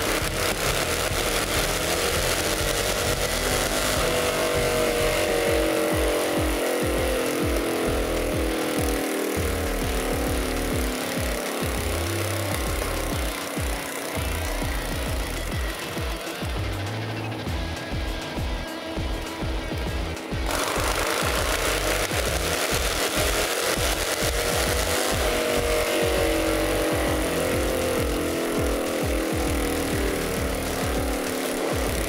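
Background music mixed with a Harley-Davidson Fat Boy's V-twin engine running on a chassis dyno. The engine's pitch slides slowly down twice, about four seconds in and again near the end, as it winds down after a pull.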